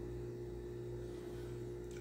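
A faint, steady low hum with a few unchanging tones, the background of a pause in speech.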